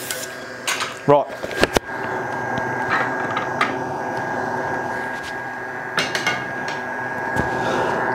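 Wood lathe running with a steady hum, with a few brief clicks and knocks from woodturning tools being handled.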